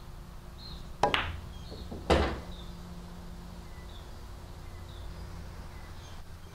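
A pool shot: a sharp clack of billiard balls colliding about a second in, then about a second later a heavier knock as a ball drops into a pocket, followed by a low rumble for a second or so. This is the frozen 'dead' five ball being pocketed.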